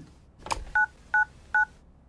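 Touch-tone telephone keypad dialling: a faint click, then three short identical two-tone beeps about a third of a second apart, each the tone of the digit 9, so 999 is being dialled for the emergency services.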